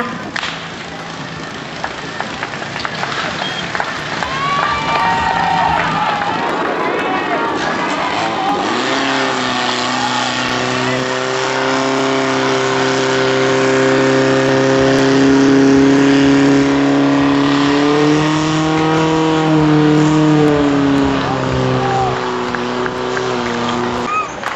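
A portable fire pump's engine running at full throttle, a steady drone that comes in about nine seconds in and dips and rises in pitch a few seconds before the end, as it drives water through the hoses at the targets. Spectators shout throughout.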